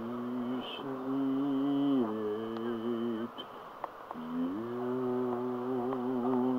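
A man humming low, long-held notes, each a second or more, stepping slightly in pitch, with a short break a little past the middle.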